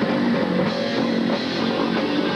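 Live rock band playing: electric guitar through a Peavey amp, with a drum kit, steady and loud.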